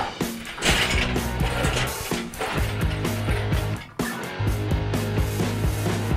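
Background rock music with a steady beat, over mechanical clicking and clanking from a hydraulic engine crane being pumped to lift an engine.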